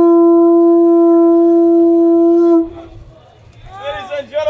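Conch shell trumpet (Hawaiian pū) blown in one long, steady, loud note that cuts off about two and a half seconds in, sounded to open the luau. A man's voice follows near the end.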